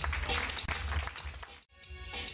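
Audience applause over the start of a backing track with a heavy bass beat; the sound drops out for an instant near the end, then the music carries on with sustained synth-like tones.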